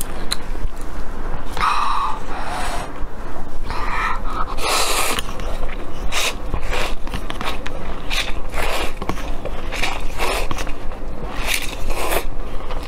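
Close-miked slurping of instant noodles in spicy broth, eaten straight from a paper cup: a run of short, irregular slurps and mouth sounds.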